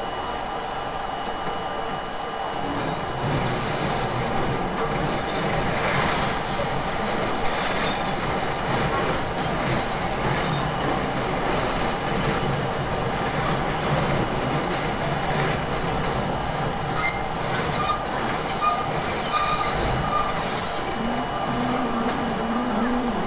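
An R32 subway car running on elevated track, its wheels rolling on the rails, the running noise growing louder about three seconds in as the train picks up speed. Short high wheel squeals come from the rails in the later part as it takes a curve.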